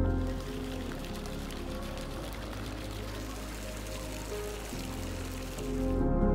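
Steady rain falling in an even hiss, with soft ambient background music underneath.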